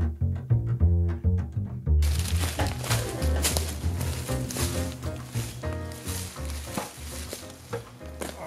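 Plucked and bowed string music for about the first two seconds. It then gives way to crackling footsteps in dry leaf litter and knocks from a ladder being carried and set against a tree.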